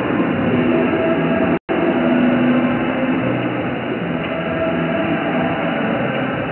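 Reverberant sports-hall noise during a floorball game: a steady wash of crowd chatter, players' calls and court sounds echoing in the hall. The sound cuts out completely for a split second about one and a half seconds in.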